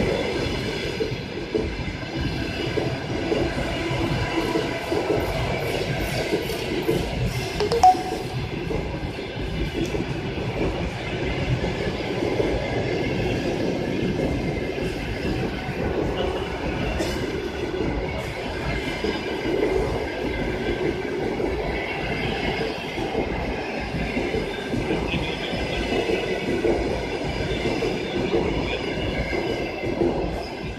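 Passenger coaches of an express train rolling past a station platform, their wheels running over the rails with a steady, loud rumble. A single sharp knock about eight seconds in.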